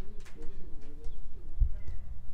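A bird cooing in low notes during the first second, with a few short low thumps near the end.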